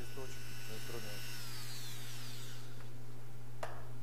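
Mini drill with a flexible shaft and glass-grinding attachment running with a steady high whine, then spinning down after being switched off: the whine falls in pitch from about a second in and fades out over the next second and a half. A single sharp click comes near the end.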